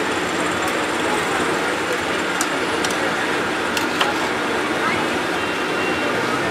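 Jalebis frying in a wide pan of hot oil, a steady sizzle, with a few sharp metal clicks as the wire skimmer and spatula touch the pan. Indistinct voices and street noise sit underneath.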